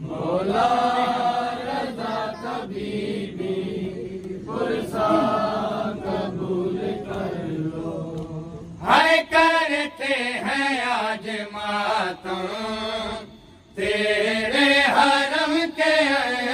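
Men's voices chanting a noha, a Shia mourning lament, unaccompanied. About nine seconds in the chant grows louder and higher, breaks off for a moment shortly after, then resumes.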